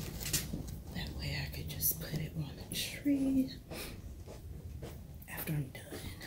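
Rustling and clicking handling noise from a hand-held phone camera being carried, with faint murmured voice fragments and a short hum-like tone about three seconds in.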